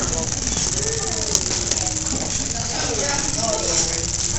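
A homemade scribble machine's small electric motor buzzing steadily, rattling its plastic-basket body and marker legs against paper as it vibrates along, drawing zigzag lines. Faint voices are heard underneath.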